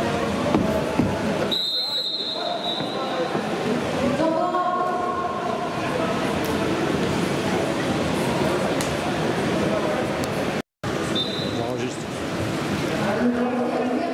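Indistinct voices echoing around an indoor arena during a horse-ball match. A long referee's whistle blast comes about two seconds in and a short one about eleven seconds in.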